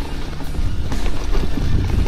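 A mountain bike rolling along a leaf-covered dirt trail: a steady low rumble from the tyres and the ride, with a few short knocks from the bike, under background music.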